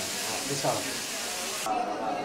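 Steady hiss of fish deep-frying in a pan of hot oil, with faint voices under it. The hiss drops away abruptly near the end.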